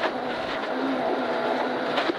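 Ford Escort Mk1 rally car heard from inside the cabin: its engine running at a fairly steady note, with gravel rumbling under the tyres as it turns through a tight hairpin.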